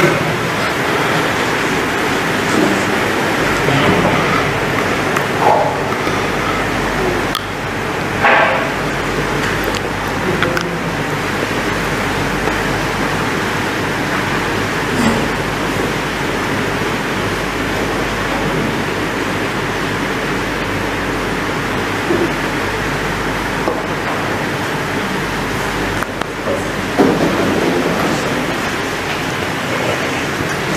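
Steady hiss of background noise, with a few faint, brief murmurs of voices.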